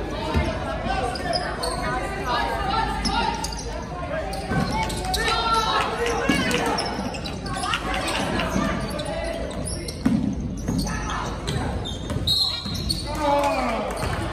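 Basketball bouncing on a hardwood gym floor during play, the impacts echoing in the large hall.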